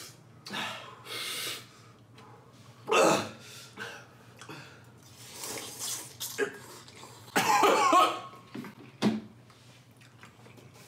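A man coughing several times and breathing hard, a reaction to the burning heat of extra-spicy ramen. Sharp coughs come about 3 seconds in and again near the end, with a longer coughing fit a little before that.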